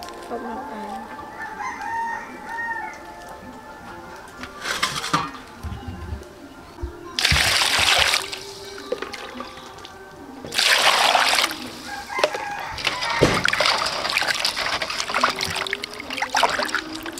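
A stream of water poured in gushes onto raw tiger prawns and crabs in a metal pot, then steady running and splashing from about 13 seconds in as hands wash the shellfish.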